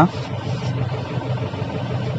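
Mahindra Bolero's engine idling steadily while stopped, heard from inside the cabin as a low, even hum.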